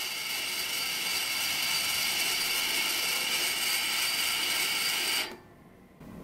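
Small benchtop metal lathe running with a steady high-pitched gear whine as it spins a model engine flywheel in its chuck, then switched off and winding down to quiet about five seconds in.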